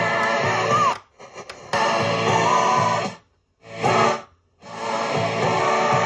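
Music with singing playing from a Panasonic RX-5090 cassette boombox, interrupted as its controls are worked. About a second in it drops to a ragged quiet stretch with a couple of clicks, comes back, then cuts to silence twice around a short burst of music before resuming steadily.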